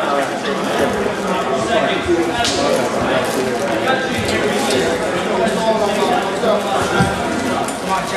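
Chatter of several people talking at once, with a couple of short knocks, one about two and a half seconds in and one near the end.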